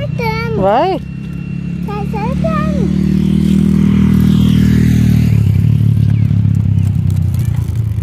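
A motor vehicle's engine on the road, growing louder over the first four seconds as it comes close and staying loud, its sound changing about five seconds in as it goes by.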